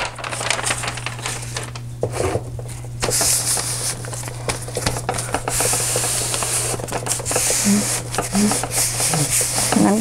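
Brown wrapping paper rustling as gloved hands lay it down and smooth it flat over glued cardboard. The rustle is heaviest from about three seconds in until near the end, over a steady low hum.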